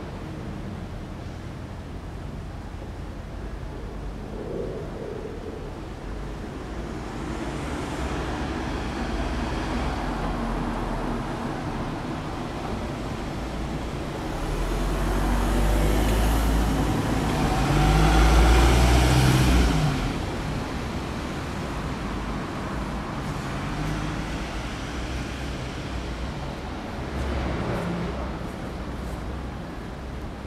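Road traffic: a steady low rumble of vehicles, swelling as one passes close about two-thirds of the way through.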